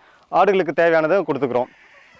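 A man speaking in a short phrase that stops a little before the end.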